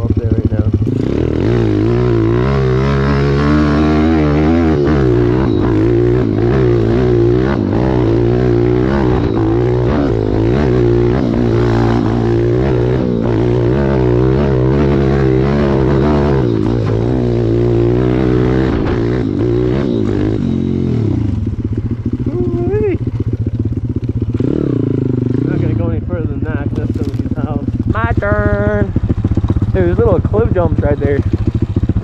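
Pit bike's small single-cylinder four-stroke engine revving up and down as it is ridden up a dirt trail, its pitch rising and falling with the throttle. After about 21 seconds it drops back to a lower, steadier run.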